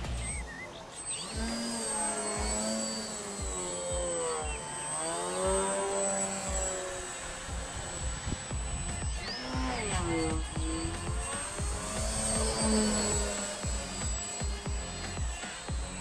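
Electric motor and propeller of a FunCub RC model plane whining in flight, the pitch gliding up and down several times as the throttle and flight path change.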